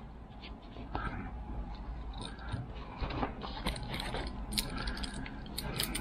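Light metallic clicking and jingling as a Swiss Army knife and metal zipper pulls knock together while the knife's corkscrew works a tight paracord knot loose. Scattered small clicks that grow busier in the second half.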